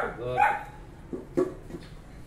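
Golden retriever barking, two loud short barks in quick succession right at the start, then a few weaker, shorter yips about a second later.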